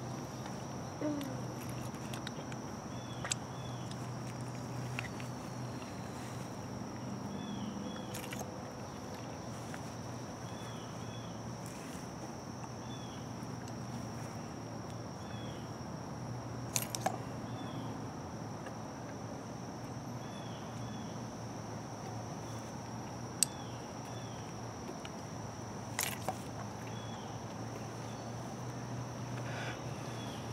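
A steady, high insect drone with faint chirps now and then, broken by a few sharp clicks and knocks from a fire piston being struck and handled, the loudest a quick double knock past the middle.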